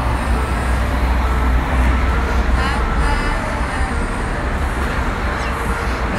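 Road traffic noise under a concrete overpass: a steady, loud low rumble with faint voices in the background.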